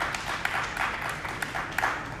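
Audience applauding: a short round of many hands clapping that dies away near the end.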